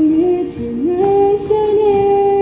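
A woman singing a Cantonese pop ballad into a microphone over acoustic guitar accompaniment. Her melody steps upward and settles into a long held note about halfway through.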